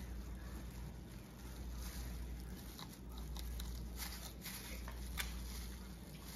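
Faint small scrapes and ticks of a fillet knife cutting along a fish's backbone on a cutting board, a few irregular ticks about halfway through, over a low steady hum.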